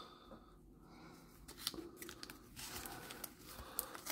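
Faint rustling and light clicking of a trading-card sticker pack's wrapper and loose cards being handled.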